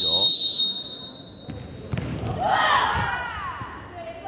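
A broadcast transition sound effect: a bright swoosh with a ringing high tone that hits hard at the start and fades over about two seconds. After it, a few ball knocks and voices calling out in the second half.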